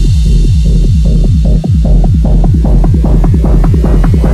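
Hard techno track: a fast, pounding kick and rolling bass, each hit dropping in pitch, with short higher stabs growing louder toward the end.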